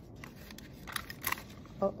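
Handheld stapler clicking twice about a second in, pressed on the edge of a construction-paper ring.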